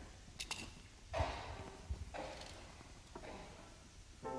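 Faint movement and handling noises: two quick clicks near the start, then brief soft rustles about a second in and again at two seconds.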